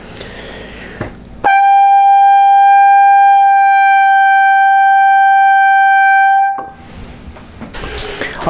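Trumpet holding a single steady high A above the staff (sounding concert G) for about five seconds, starting about a second and a half in. It is a note that the first valve plays a little sharp, the note the first valve slide is pulled out to bring into tune.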